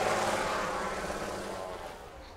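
Engine and propeller drone of a small propeller plane, fading steadily as it moves away.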